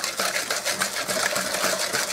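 Wire balloon whisk beating egg yolks and sugar in a mixing bowl: fast, even clicking and scraping as the wires strike the bowl and churn the thick yolk mixture.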